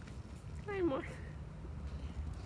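A domestic cat gives one short meow that falls in pitch, about a second in.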